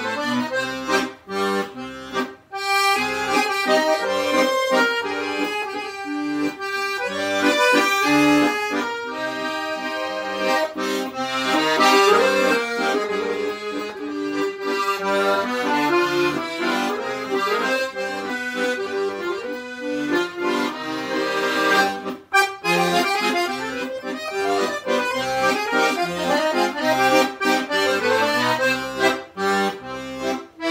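Solo piano accordion playing a Colombian Andean waltz (vals), with chords and melody running steadily and two brief pauses between phrases, about two seconds in and again about twenty-two seconds in.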